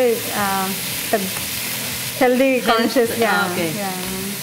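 Sliced chicken and green chillies frying with a steady sizzle in a nonstick pan, while cooked brown rice is scraped into it from a glass bowl with a spatula. A voice talks over the sizzle near the start and again from about two seconds in.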